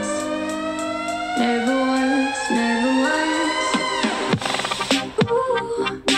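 A hip-hop/electronic track played back through the Zealot S55 portable Bluetooth speaker as a sound sample. A rising tone climbs for about four seconds, then breaks into drum hits.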